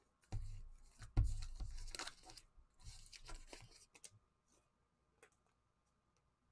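Rustling and scraping of a clear plastic card sleeve being handled as a trading card is slid into it, with a few soft knocks in the first two seconds. The handling stops about four seconds in.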